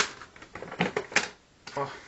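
Hard plastic DVD spindle cases clicking and clattering as they are handled and lifted off a shelf: a sharp click at the start, then a quick run of clicks about a second in.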